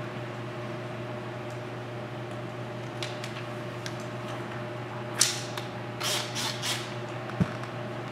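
Steady low room hum. Over it come short hissing bursts: one about five seconds in, then three in quick succession a second later, with a brief soft thump near the end, as a pre-cut paint protection film piece is handled and laid onto a car fender.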